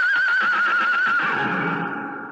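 Horse whinnying, a radio-drama sound effect: one long, quavering neigh held high, then fading away in the second half.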